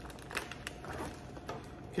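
Faint handling sounds of a small crossbody bag being closed up: soft rustling with a few light clicks.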